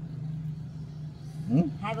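Steady low mechanical hum, like a motor running nearby, during a pause in talk. A voice starts speaking near the end.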